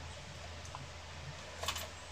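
Faint clicks and rustle of a metal crochet hook working yarn, with a small cluster of clicks near the end, over a steady low hum.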